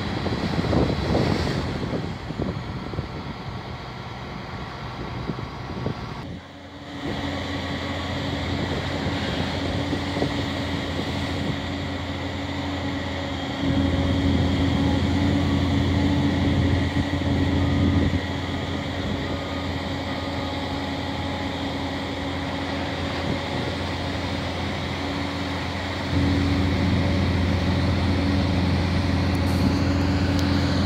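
Hitachi excavator's diesel engine running steadily. It steps up louder twice, for a few seconds about halfway through and again near the end, as the long-reach arm and bucket are worked under hydraulic load.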